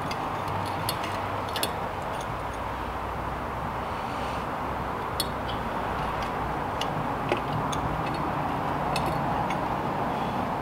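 Small metal clicks and taps of stunt-scooter headset parts (bearings, cups and shim) being handled and fitted onto the fork. A handful of sharp ticks are spread through, over a steady background hiss.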